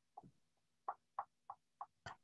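Faint clicking at a computer, about six short quick clicks at uneven intervals, over a faint steady hum.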